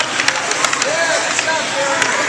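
Ice-rink play: skate blades scraping across the ice and hockey sticks clacking as several players fight for the puck. Indistinct shouting voices sound over it.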